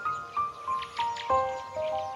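Instrumental music: piano playing a flowing melody of a few notes a second, with a deeper chord coming in a little past halfway.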